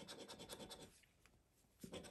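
Faint scraping of a round scratcher disc rubbed quickly back and forth over a scratch card's latex panel, a run of short strokes that stops about a second in and starts again near the end.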